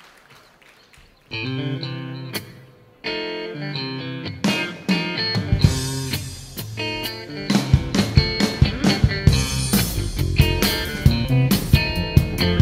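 Live rock band starting a song. An electric guitar plays held chords alone from about a second in, drum hits come in, and bass and drums join as a full band a little past halfway.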